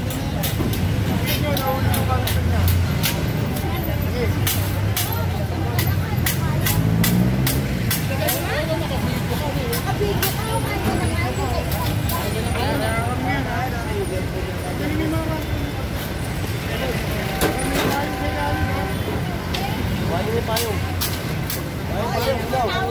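Busy street sound: several people talking over a motor vehicle engine running nearby, with a run of sharp clicks and knocks through the first half.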